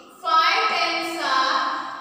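A high voice chanting in a sing-song tune, drawn-out syllables on held notes starting about a quarter second in and fading near the end.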